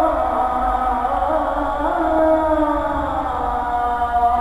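A male muezzin chanting the Islamic call to prayer (ezan) in one voice, holding long ornamented notes that glide slowly up and down.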